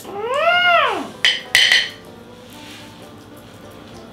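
A single high vocal call that rises and then falls in pitch over about a second, followed by two short clinks, then quiet room tone.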